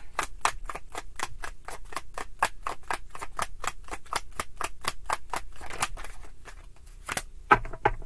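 A tarot deck being shuffled hand to hand: a quick, even run of card slaps, about five or six a second. It thins out and stops around six seconds in, followed by one sharper click.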